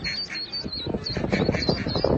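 A group of ducklings peeping: short, high calls repeated several times a second over a low background rumble.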